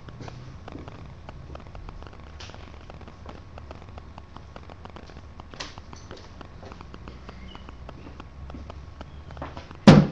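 Quiet room with scattered faint clicks and knocks, then one sharp, loud knock just before the end: a gilded finial being set down on a workbench.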